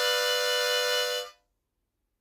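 Diatonic harmonica holding one long, steady tone that stops about a second and a half in.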